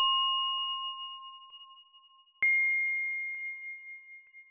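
Two clean, bell-like ding tones: one struck just before rings out and fades over about two seconds, then a second, higher ding strikes about two and a half seconds in and rings on, slowly fading.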